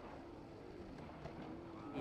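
Quiet outdoor background with faint, distant voices.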